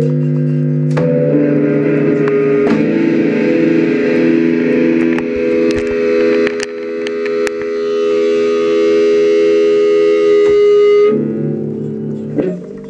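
Electric guitar through effects holding long sustained chords that shift to new notes every few seconds, with a few sharp clicks and knocks over them.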